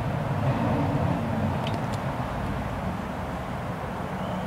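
Steady low outdoor rumble with a couple of faint clicks near the middle.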